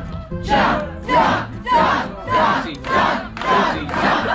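An audience chanting a short shout in unison, about six times at a steady beat.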